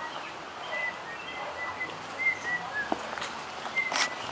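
Small birds chirping faintly, short high chirps scattered through, over a steady outdoor background hum.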